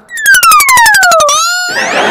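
Cartoon-style comedy sound effect: a falling whistle-like tone with a rapid run of clicks over it, ending in a short rising glide. Studio audience laughter comes in near the end.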